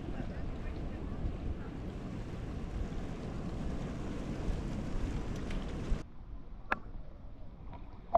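Wind blowing across the microphone on an open beach, a steady rushing noise that cuts off about six seconds in. After that, quieter water at the surface with a few small splashes.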